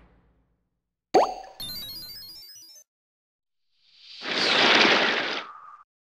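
Cartoon sound effects over an animated logo: about a second in, a quick rising bloop, followed by a short sparkling run of high chime-like notes. After a pause, a rush of noise swells up for about two seconds and fades out near the end.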